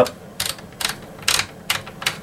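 Franchi Affinity 12-gauge shotgun's magazine cap being unscrewed by hand: four short scraping clicks, about one every half second, as the cap is turned.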